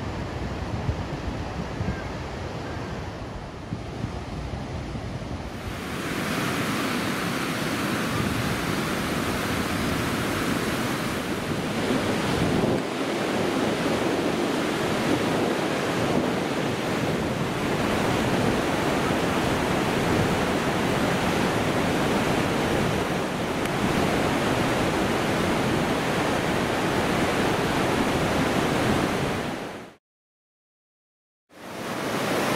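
Steady rushing of a mountain stream running in rapids over bedrock ledges, with wind on the microphone in the first few seconds. About six seconds in the rushing becomes louder and fuller, and it holds steady until it cuts off at the very end.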